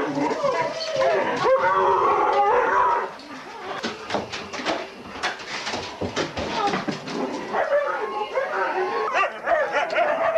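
A pack of Siberian Huskies howling, whining and yipping together in excitement, many overlapping wavering voices. The calling eases about three seconds in, with a few short sharp yips, then swells again near the end.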